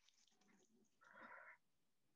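Near silence, with one faint, brief sound about a second in.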